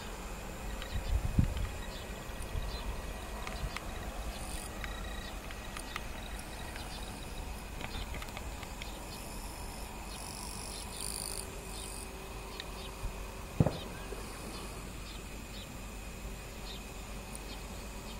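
Insects calling steadily in summer fields: a thin unbroken high tone, with higher buzzes that come and go. A low thump comes about a second in.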